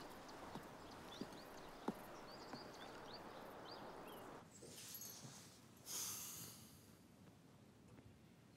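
Quiet outdoor ambience with faint small-bird chirps and three soft taps early on, then a short rush of noise that swells and fades about six seconds in.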